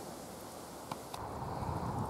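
Wind on the microphone: a faint low rumble that builds in the second half, with a couple of small clicks about halfway through.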